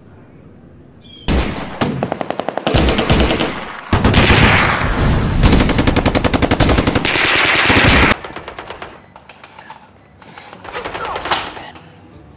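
Rapid automatic gunfire in repeated bursts, starting about a second in and loudest for several seconds in the middle, then trailing off into a few weaker shots.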